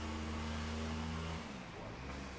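A machine's steady low hum, constant in pitch and level, that cuts off about one and a half seconds in.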